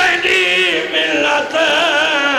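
A man's voice chanting a mournful lament in long, wavering held notes: a zakir's sung recitation at a majlis.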